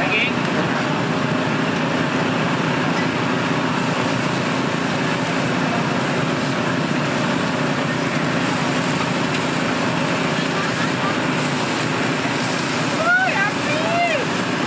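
Steady street-stall din of many voices and traffic around a charcoal satay grill, with the hiss of meat and oil sizzling over the coals. A voice calls out briefly near the end.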